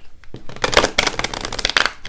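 A deck of tarot cards riffle-shuffled on a tabletop: a rapid run of card edges flicking, starting a moment in and lasting about a second and a half.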